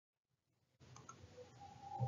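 Near silence, with two faint clicks.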